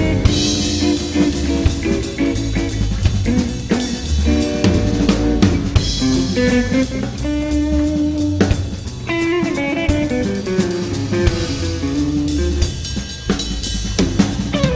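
Live instrumental jazz-rock fusion from an electric guitar, electric bass and drum kit trio: the guitar plays single-note lines and held notes over a busy bass line and steady drumming with constant cymbal work.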